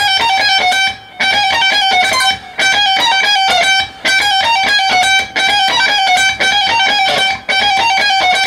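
Electric guitar playing a fast lead phrase of rapidly repeated high notes, pull-offs on the top strings. It comes in short runs of about a second and a half with brief breaks between them.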